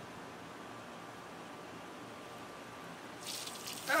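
Garden hose water running into a large balloon, a faint steady rush with a thin steady tone. Near the end a louder spraying hiss sets in as water starts to escape at the hose-balloon joint under the building pressure.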